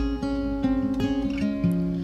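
Acoustic guitar played live, chords strummed in an even rhythm with the notes changing every third of a second or so.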